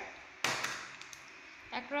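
A single sharp click about half a second in, from a patch cord's banana plug being handled on the trainer panel, with a short fading tail.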